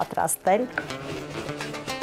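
A kitchen knife slicing through a pear on a wooden cutting board, over background music.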